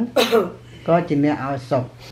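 A man's voice preaching in Khmer, with a throat clearing just after the start.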